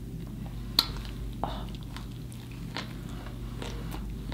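Close-miked chewing of a mouthful of burger: soft wet mouth clicks and smacks, with a sharper click a little under a second in and another about a second and a half in, over a steady low hum.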